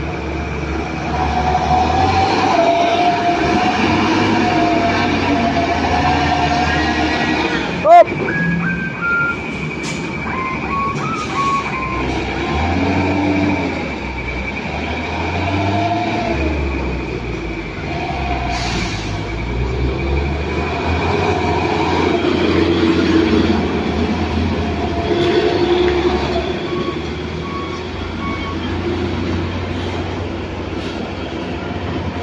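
Heavy diesel trucks and buses climbing a steep hairpin bend, their engines running under load with a deep rumble. About eight seconds in there is a loud sharp knock, followed by a short run of stepped, falling then rising pitched notes.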